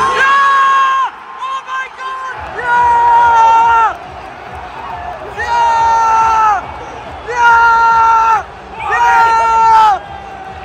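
A man close by yelling five long, held shouts of joy at a goal, over a stadium crowd cheering.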